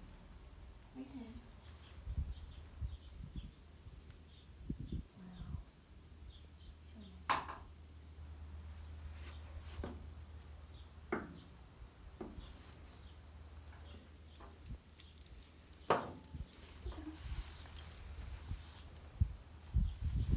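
A few sharp metal clinks and rattles of bridle hardware, the bit and buckles, as a horse is bridled. Faint steady insect chirping runs underneath, with a low hum through the middle.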